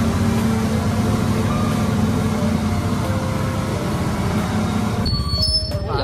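Passenger boat underway, heard from inside the cabin: the engine runs steadily under the rush of water and wind. About five seconds in it cuts off abruptly to a different scene.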